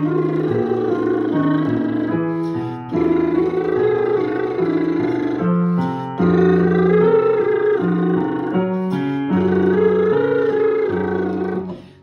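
Vocal warm-up exercise: a man vocalising in phrases of about three seconds over chords played on a digital piano, which step to new chords every second or so. The voice breaks off briefly three times between phrases.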